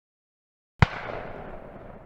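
Explosion sound effect: a sudden sharp blast under a second in, followed by a rumbling noise that fades away.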